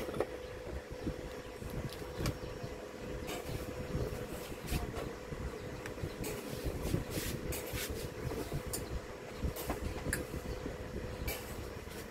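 Low, steady background rumble with a faint constant hum, and a few faint clicks scattered through it.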